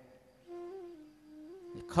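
Soft humming of a few held notes, the pitch stepping up, down and up again, lasting about a second and a half.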